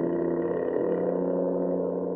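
Trombone played with a rubber plunger mute over the bell, holding one long note at a steady level.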